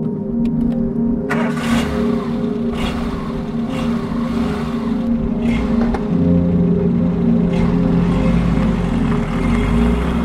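Peugeot 205 XS's carburetted four-cylinder engine under way and accelerating, coming in sharply about a second in and growing louder and deeper from about six seconds, with ambient music playing over it.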